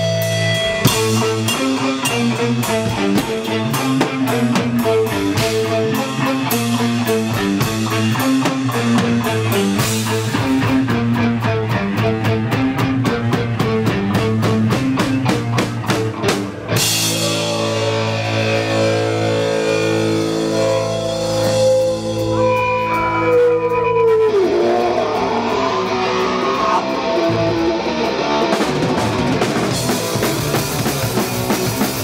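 Hardcore punk band playing live: fast drums with distorted guitar and bass. About halfway through the drums drop out and a held note rings on and slides down in pitch, then the band builds back up near the end.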